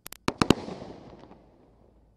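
Last shots of a Brothers Pyrotechnics Geronimo 500-gram, 35-shot fireworks cake: five sharp bangs in quick succession in the first half second, each louder than the one before, then a fading echo with a few faint crackles.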